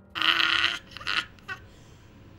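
A person's loud, breathy vocal cry lasting about half a second, followed by two shorter vocal sounds.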